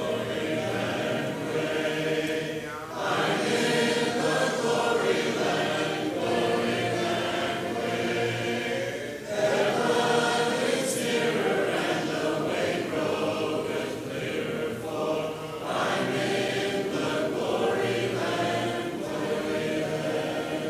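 Congregation singing a hymn a cappella, many voices together without instruments, with brief breaths between lines about three, nine and sixteen seconds in.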